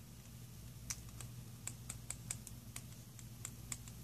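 Faint, irregular clicking of long fingernails tapping and scrolling on a smartphone touchscreen: about a dozen quick taps starting about a second in, over a steady low hum.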